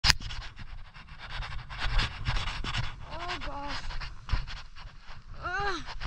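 A skier panting hard with quick, noisy breaths while moving through deep powder. Two short, high-pitched voice calls follow, about three seconds in and again near the end.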